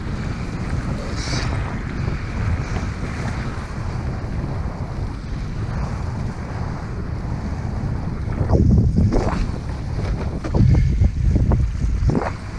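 Wind buffeting the microphone of a windsurfer under sail, with water rushing against the board. The buffeting grows louder about eight seconds in and again near the end.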